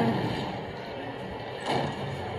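Audio of a horror short film playing through a tablet's speaker: a steady hiss with a short burst of noise near the end.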